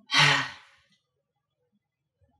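A person's short, breathy sigh with a little voice in it, about half a second long, right at the start and fading away.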